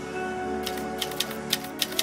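Sustained logo-sting music with held tones, overlaid in the second half by a quick run of typewriter-style clicks: a typing sound effect for text appearing on screen.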